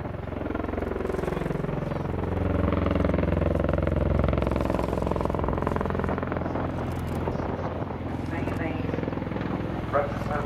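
CV-22 Osprey tiltrotor flying low with its proprotors tilted up in helicopter mode: a steady, deep rotor-and-turbine drone that grows louder about two seconds in as it approaches and then holds.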